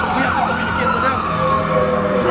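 Emergency-vehicle siren wailing: one tone that falls slowly, sweeps quickly back up about half a second in, then falls slowly again.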